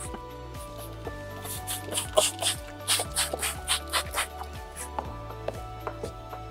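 Handheld trigger spray bottle squirting clean water in a quick run of short hissing sprays, about four a second, starting about a second and a half in and stopping a little after four seconds. Background music plays throughout.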